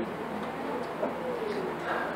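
Faint room noise with a few soft, low calls that glide up and down: a bird cooing in the distance.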